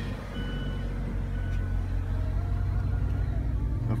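A Mazda 3's four-cylinder engine idling steadily just after starting, a smooth low hum heard from inside the cabin.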